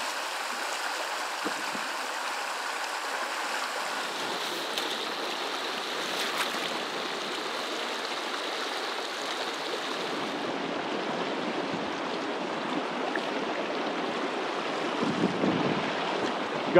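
Small mountain stream running, a steady rush of water.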